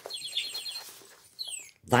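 A small bird chirping: a quick, evenly repeated high trill, then a couple of short calls that fall in pitch.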